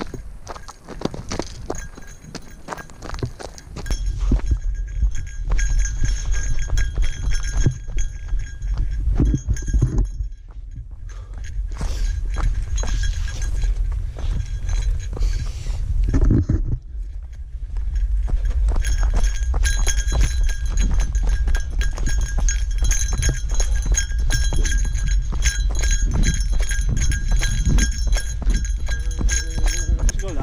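Footsteps crunching on a rocky, gravelly mountain trail, with a small bear bell on a pack jingling in time with the strides. A low rumble runs under it and drops away briefly twice.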